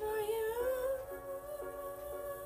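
A young woman singing a wordless held note, humming-like, that slides up in pitch over the first half second and then holds. Beneath it is a backing track whose soft chords are struck about twice a second.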